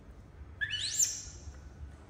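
A short, high-pitched animal call about half a second in, rising steeply in pitch, then holding a thin high tone for a moment before fading.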